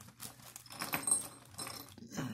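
Faint handling noise: soft clicks and rustles with a brief light metallic clink about a second in, as of small metal hardware being moved.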